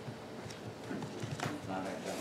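Quiet murmur of voices away from the microphone, with scattered light clicks and knocks. Near the end a voice briefly rises.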